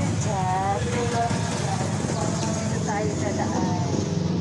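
Indistinct voices, too faint or distant for words, over a steady low rumble.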